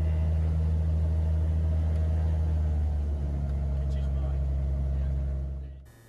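Cessna 182's piston engine and propeller running steadily at low power while the aircraft taxis, heard from outside under the wing as a steady low drone. It cuts off just before the end.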